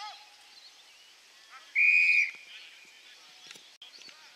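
Australian football umpire's whistle blown once, a short steady blast of about half a second, about two seconds in, stopping play at a tackle.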